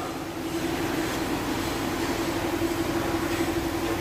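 Steady mechanical hum holding one low pitch, with an even hiss over it.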